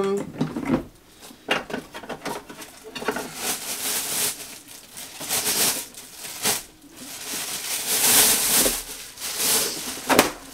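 Thin plastic refill bag of a Diaper Genie pail rustling and crinkling as it is pulled down through the pail, with a few sharp clicks from the plastic pail's parts; the rustling grows louder in the second half.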